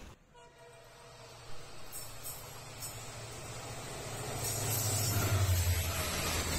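Indian Railways diesel locomotive hauling an express train, approaching on the adjacent track. Its engine drone and the rail noise build from faint to loud, with the locomotive passing close by near the end.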